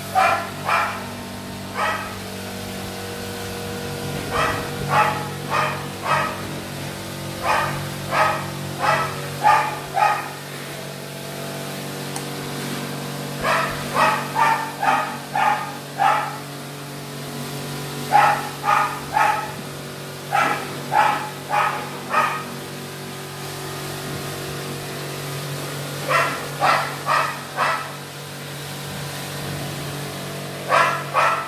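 A dog barking repeatedly, in runs of four to six quick barks every few seconds, over a steady low hum.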